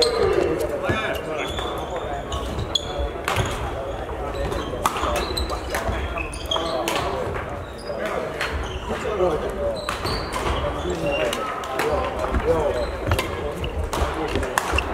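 Badminton rackets striking shuttlecocks: sharp hits at irregular intervals from this and neighbouring courts in a large sports hall, over background voices.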